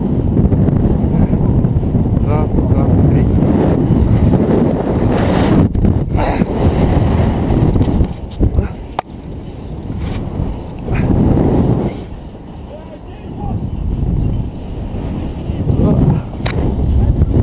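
Wind buffeting the camera's microphone during a rope jump's freefall and swing. It is loud and steady for about eight seconds, then eases and swells in waves as the rope swings.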